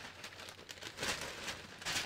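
Large sheets of dotted pattern-drafting paper rustling and crinkling as they are lifted, slid and smoothed flat by hand on a cutting mat, with a few louder swishes of paper.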